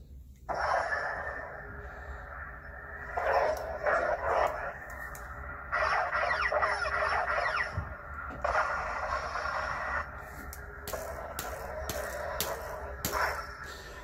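Lightsaber sound from the Aegis Sabers Guardian hilt's smoothswing soundboard: the blade ignites about half a second in, then a steady electric hum that swells and sweeps in pitch several times as the saber is swung. A few sharp clicks come near the end.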